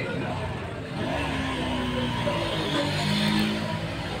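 A motor vehicle's engine droning past, swelling about a second in and fading near the end.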